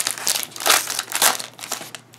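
Foil Pokémon TCG booster pack wrapper crinkling in the hands as it is opened: a run of irregular crackles that dies away near the end.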